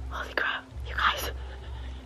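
A person whispering in short breathy bursts, over a low rumble.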